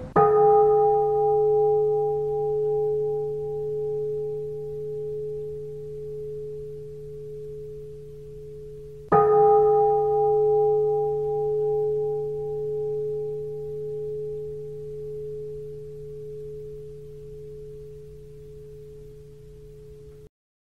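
Singing bowl struck twice, about nine seconds apart. Each strike rings out with one clear steady tone over fainter higher ones, slowly fading with a gentle wavering pulse.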